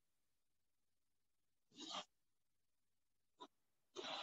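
Near silence, broken about two seconds in by one brief, soft scrape of a palette knife dragging thick white acrylic paint across a stretched cotton canvas, then a faint tick near the end.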